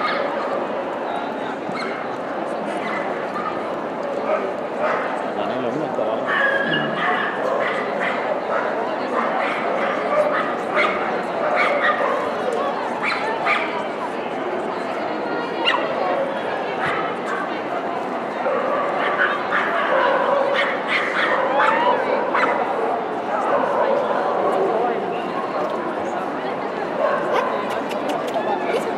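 Many voices chattering in a large dog-show hall, with dogs barking and yipping here and there among them.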